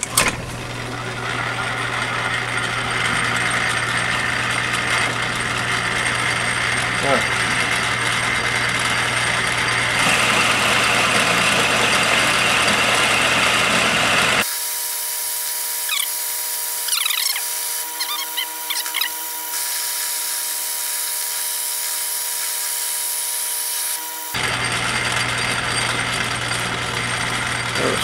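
Metal lathe starting up and running, turning a small part in its chuck during a roughing cut: a steady motor hum with cutting noise. For about ten seconds in the middle the low hum drops away and a few steady whining tones take over, then the earlier sound returns.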